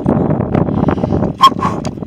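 Wind noise on the microphone mixed with hard breathing from the effort of an uphill climb, and one sharp click about one and a half seconds in.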